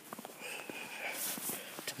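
Footsteps crunching through deep snow, with a run of short, sharp crunches and a faint high squeak about half a second in.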